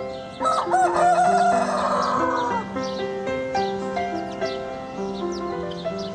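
A rooster crowing once, starting about half a second in and lasting about two seconds, with a wavering middle and a falling end. Background music with slow, steady notes plays throughout.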